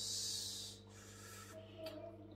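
A short hissing breath lasting under a second, then a faint click near the end, over a steady low electrical hum.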